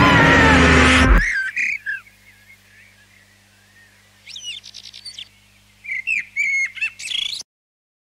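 Loud music cuts off abruptly about a second in. Then come faint bird-like chirps and whistles with rising and falling pitch, in three short bouts, one of them a quick trill, over a low steady hum.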